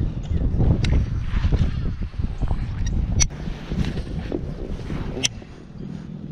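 Wind buffeting the camera microphone with a steady low rumble, broken by three sharp clicks about two seconds apart.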